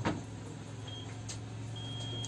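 Handheld infrared thermometer beeping, a short beep about a second in and a longer one near the end, as it takes passengers' temperatures. Under it is a steady low hum, with a sharp click at the start and another partway through.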